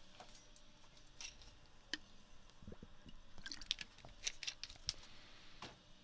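Faint, scattered clicks and small handling noises over a low hiss, with no speech.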